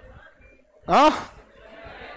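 A man's single short spoken exclamation, "ha", about a second in, rising in pitch, with a faint murmur of room noise around it.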